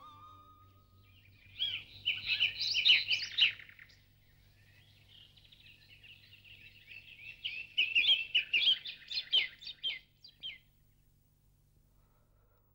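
Small birds chirping and twittering in two bouts, one about a second and a half in and a longer one from about seven to ten seconds in, as at dusk.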